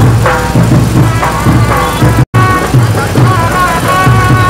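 Music with a steady beat and sustained melodic notes. It cuts out completely for a split second a little past halfway, then carries on.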